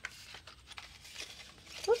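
Faint rustling and a few light ticks of paper being handled by hand: a card and a small paper envelope moved about on a tabletop.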